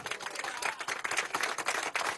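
A group of people clapping their hands in applause, a dense patter of quick claps.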